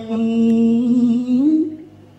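A voice holding one long sung note, steady in pitch, which rises slightly about a second and a half in and then fades out.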